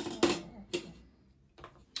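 A few light clicks and taps of small plastic toy parts being set down on a tabletop: three in the first second, then one more near the end.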